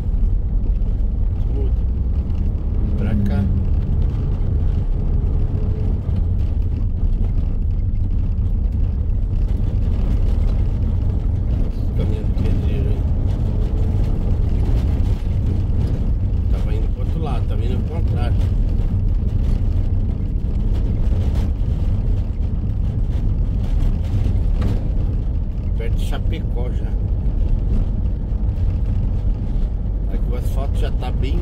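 Steady low rumble of a Mercedes-Benz Sprinter van's engine and tyres, heard from inside the cab while driving.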